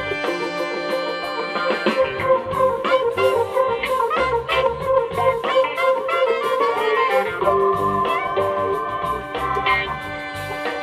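Live funk band playing, led by a horn section of saxophones and trumpet playing a melody line over electric keyboard and drums.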